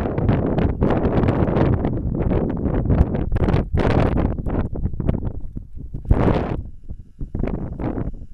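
Wind buffeting the camera microphone in irregular gusts, a loud rumbling rush that eases off briefly near the end.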